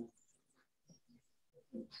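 Mostly faint room sound over a video call with small scattered noises, and a short burst of laughter near the end.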